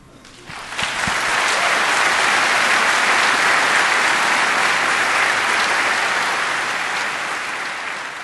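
Audience applauding: the clapping swells up within the first second, holds steady, and begins to die away near the end.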